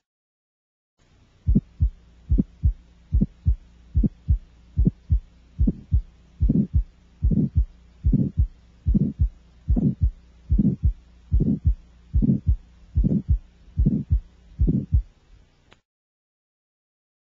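Child's heart heard through a stethoscope over the aortic area, beating steadily at about four beats every three seconds. Each beat is a pair of thumps, opened by an aortic ejection sound, with the harsh, medium-pitched mid-systolic murmur of aortic stenosis. The beats start about a second in and stop shortly before the end.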